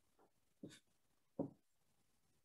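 Near silence: room tone through a laptop microphone, broken by two faint, brief sounds, one just over half a second in and one about a second and a half in.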